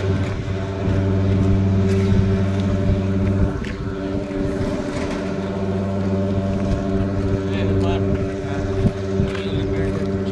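A steady, low machine hum at a fixed pitch. It dips briefly about three and a half seconds in, then carries on unchanged.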